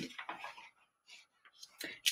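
Quiet pause with a faint soft rustle as a picture book's paper page is turned, after the tail of a spoken word.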